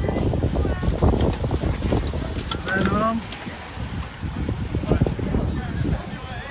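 Wind on the microphone and the whir of a bunch of racing bicycles passing close by, with spectators' voices; a voice calls out about halfway through.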